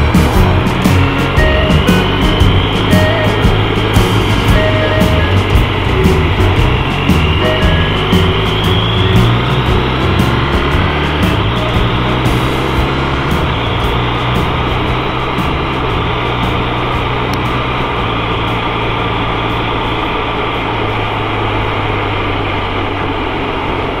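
Background rock music with guitar and a steady beat; the sharp beat hits drop away about halfway through and the music carries on more smoothly.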